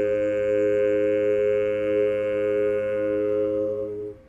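A cappella barbershop voices holding a final chord in close harmony, steady and ringing, cut off right at the end with a brief room ring.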